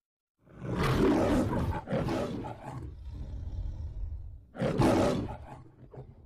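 The Metro-Goldwyn-Mayer logo's lion roar: two roars one after the other starting about half a second in, a low growl, then a third roar near the end that fades away.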